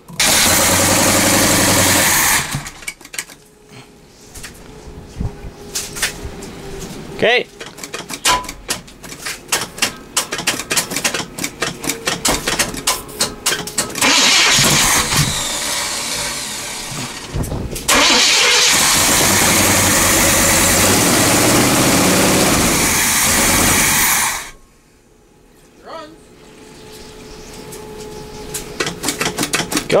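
Chevrolet 454 big-block V8 being cranked by its starter in long bursts, with stretches of uneven sputtering between, as it tries to start on stale gasoline poured down the four-barrel carburetor.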